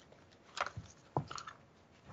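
A few short paper rustles as a book's pages are handled and turned, about half a second in and again around a second in.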